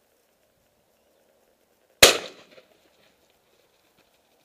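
A single shotgun shot about two seconds in, its report dying away within about half a second.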